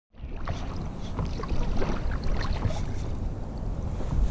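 Water splashing and lapping around a stand-up paddleboard on open water, with scattered small splashes over a steady low rumble.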